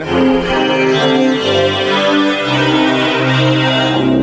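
Korg Prologue-16 hybrid polyphonic synthesizer playing sustained chords, with its two analog VCOs and its digital multi engine oscillator all sounding together. The chords change a few times, with the bass note shifting.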